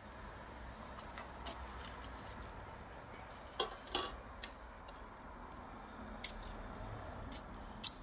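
A few sharp clicks and light metallic clatter as a portable six-element 2 m Yagi antenna is taken apart, its metal boom and element tubes knocking together, over a faint steady background.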